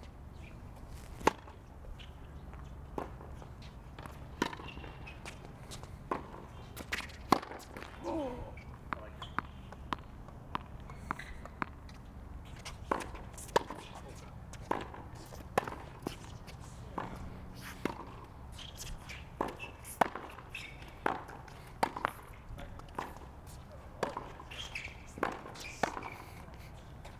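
Tennis rally on a hard court: rackets striking the ball and the ball bouncing, a sharp pop roughly every second, unevenly spaced.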